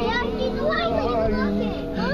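Young children's voices chattering and calling out in high, gliding tones, over Christmas music playing from the light display's outdoor speakers.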